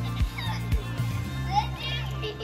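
Background music with a steady beat of about two kicks a second, with children's voices and squeals over it.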